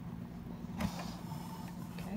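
Handling noise: a sudden rustle about a second in, then a faint scrape, as the paper pamphlet on its clipboard is moved. A steady low hum runs underneath.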